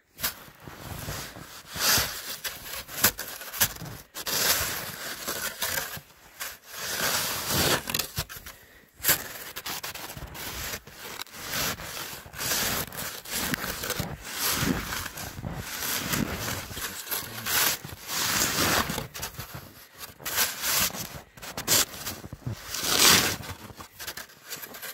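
Snow shovel blade pushing and scraping through deep, soft snow: a run of irregular scrapes and crunches, each lasting up to about a second.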